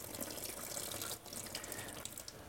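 Tap water running steadily over a knife blade held in the stream and splashing into a sink: the blade is being rinsed clean of lint and dust before acid etching.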